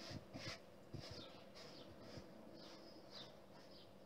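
Near silence: room tone with a few faint small taps and rustles of handling, mostly in the first two seconds.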